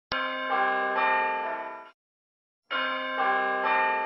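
Intro of an R&B song: a phrase of bell-like chime notes stacking up one after another, cut off abruptly after about two seconds and then repeated identically after a short silence.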